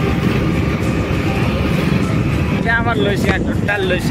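Steady rushing wind and road noise from riding along on a moving two-wheeler. Near the end, short snatches of a voice come through over it.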